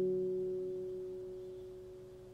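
A stainless steel handpan's last-struck notes ringing on with no new strike, a steady clear tone with overtones that slowly fades away.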